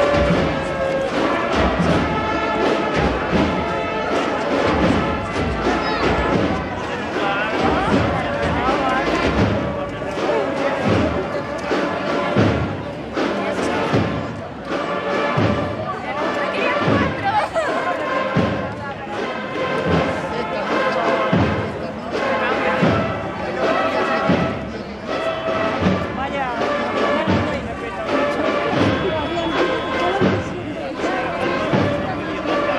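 Procession band playing a march: sustained wind notes over a drum beat about once a second, with crowd voices underneath.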